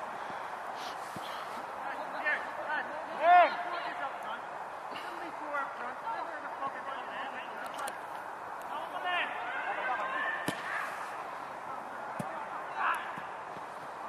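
Men's voices calling out at a distance over steady outdoor background noise. The loudest shout comes a little over three seconds in. A single sharp knock of a football being struck comes about ten and a half seconds in.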